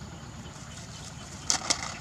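Two quick, sharp rustling clicks about a second and a half in, over a steady low rumble.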